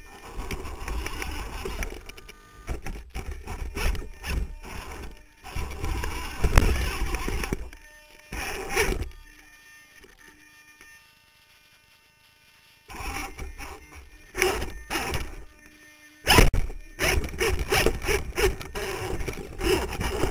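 Twin Holmes Hobbies 35-turn brushed electric motors and drivetrain of an RC rock crawler running in short bursts as it climbs over rock, with frequent knocks and scrapes of tyres and chassis on stone, heard from a camera mounted on the crawler. The sound drops to almost nothing for a few seconds midway, when the crawler stops, then picks up again.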